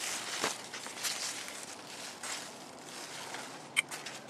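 Large zucchini and squash leaves rustling and brushing as a hand pushes through them: irregular soft swishes, with a brief sharp click near the end.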